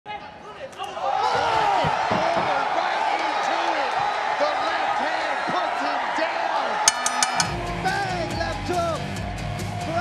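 Excited shouting voices over arena noise after a knockout. About seven seconds in, a burst of sharp clicks hits and a bass-heavy music track starts under the voices.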